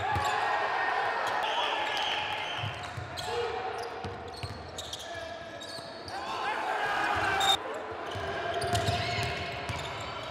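Live basketball court sound: a ball bouncing on the hardwood floor, with players calling out to each other and sharp knocks of play.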